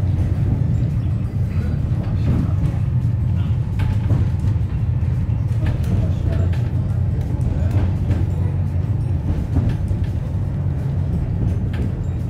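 Wellington Cable Car, a cable-hauled funicular car, running up its track, heard from inside the car: a steady low rumble of the wheels on the rails, with light clicks and rattles.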